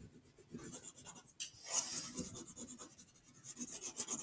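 Wax crayon scribbling on paper in quick, irregular back-and-forth strokes, filling in a colored area.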